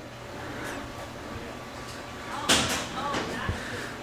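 Handling noise at low level: a short scrape-like rustle about two and a half seconds in, followed by a few faint knocks, as powder-coated parts on packing foam are touched and moved.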